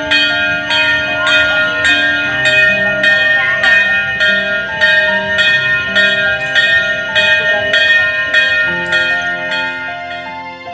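Background music built on bell-like chimes struck about twice a second, over sustained tones and a slowly changing melody and bass line.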